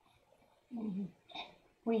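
Speech only: a pause in the narration with a brief, soft vocal sound about a second in, then the narrator's voice starting again near the end.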